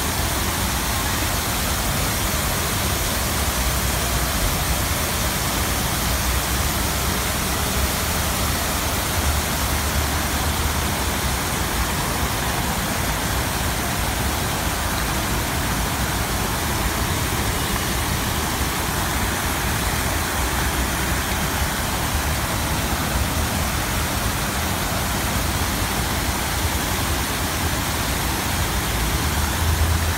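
Many fountain jets spraying and splashing down into a pool: a steady, even rush of falling water.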